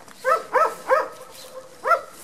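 A dog barking: three quick short barks in the first second, then a fourth near the end.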